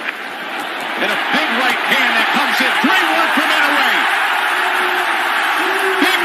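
Boxing arena crowd erupting in a loud cheer at a knockout, building over the first second and holding, with many excited individual shouts rising above the roar and one long held shout near the end.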